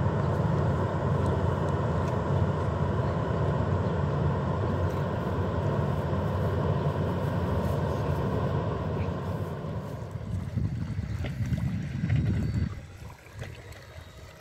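Steady low engine drone of a large river cruise ship passing on the river. It eases off late on and stops abruptly near the end.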